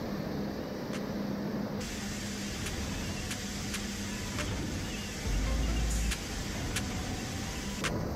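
Hydraulic road-simulator rig shaking a Chevrolet Silverado HD test truck: a steady hydraulic hum and hiss with sharp clicks and knocks every so often, and a deep low rumble lasting about a second just past the middle.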